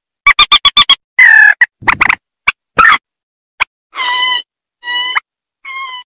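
Recorded calls of rails (burung mandar), adults and chicks: quick strings of short, clipped notes, then harsher notes, then three longer, steady calls that grow fainter near the end and cut off.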